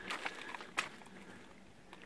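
Faint scraping of a spoon in a small saucepan of stew, with two short clicks, one at the start and one a little under a second in.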